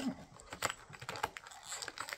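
Scattered light clicks and taps of fingers handling a cardboard toy box and its small pieces.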